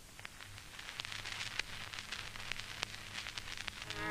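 Surface noise of an old record running in before the music: a steady hiss with scattered sharp clicks and crackle, growing gradually louder.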